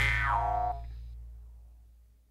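The song's final chord ringing out: a high guitar note slides down in pitch and is cut off under a second in, while a low bass note fades away to silence.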